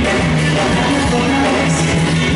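Live band playing a pop-rock song through a PA: electric guitar, drums and trumpet.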